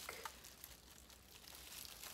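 Near silence, with faint rustling as a potted plant in its plastic wrapping is handled and one small click shortly after the start.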